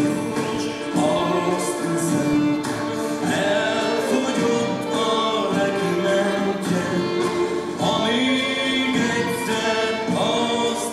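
Music with a group of voices singing a song in long held notes.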